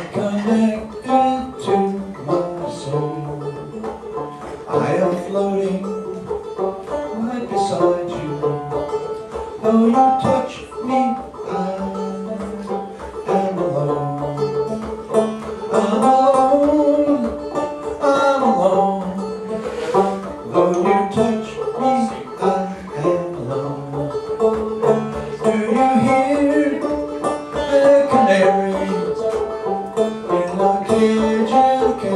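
Banjo played as accompaniment, with a man's voice singing long, sliding notes over it.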